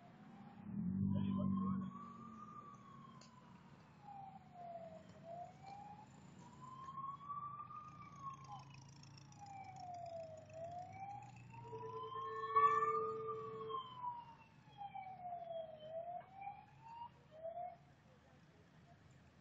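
An emergency vehicle siren wailing, its pitch slowly rising and falling about once every five seconds. There is a short low rumble about a second in, and a steady lower tone joins for about two seconds later on.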